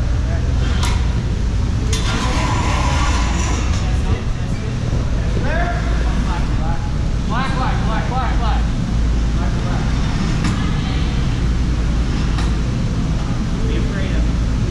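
Steady low rumble of a large gym's background noise, with voices talking in the distance twice in the middle and a few sharp knocks.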